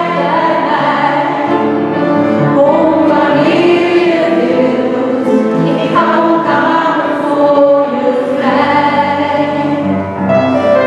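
Mixed choir of men's and women's voices singing with piano accompaniment.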